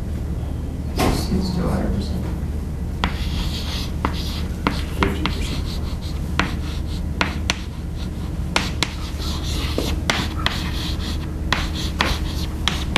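Chalk writing on a chalkboard: sharp taps as the chalk meets the board and scratchy strokes between them, starting about three seconds in, over a steady low room hum.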